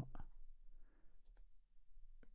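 Two faint computer mouse clicks close together, about a second and a quarter in, against quiet room tone.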